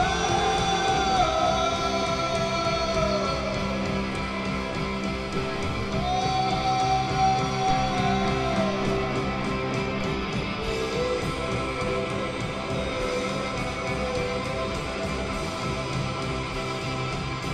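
Live indie rock band playing an instrumental passage on electric guitars and bass guitar, with long held melody notes that glide between pitches.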